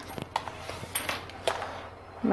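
Soft flexible tailor's measuring tapes being handled and set down on a cutting mat: faint rustling with a few small clicks and taps.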